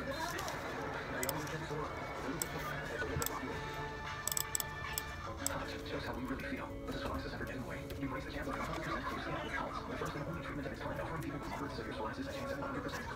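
Music and voices playing from a computer, with a few sharp clicks in the first half.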